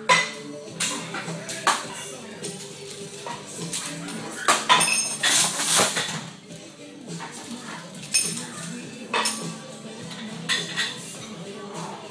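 Heavy steel chains hung around a man's neck clanking and rattling as he does pull-ups. The loudest burst of jangling comes around the middle, where he lets go of the bar and stands up with the chains swinging.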